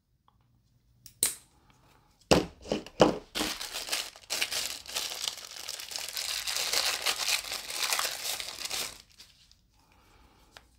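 A small clear plastic bag crinkling as it is handled and opened and a coiled cable is pulled out of it. There are a few separate rustles and clicks first, then steady crinkling from about three seconds in until nearly the end.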